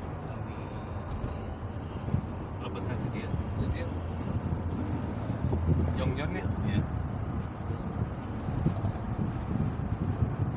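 Steady road and engine noise inside a car's cabin at highway speed, a low rumble throughout.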